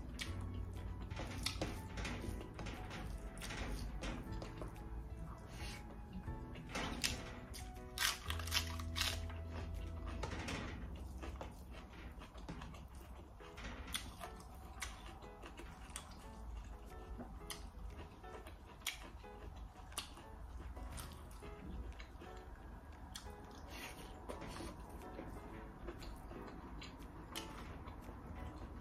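Background music with held notes, over many small clicks and smacks from eating rice and curry by hand.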